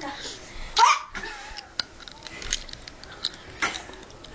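Short non-speech vocal sounds: a loud, sharp cry about a second in, then brief breathy noises and a few light knocks.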